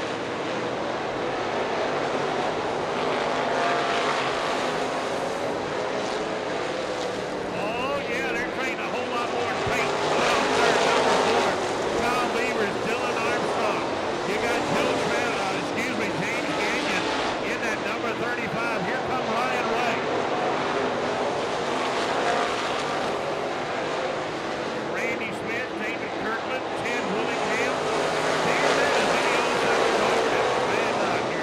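Several dirt-track stock cars racing on a clay oval, their engines a continuous loud mix. Pitch glides up and down and the loudness swells and fades as cars pass and work through the corners.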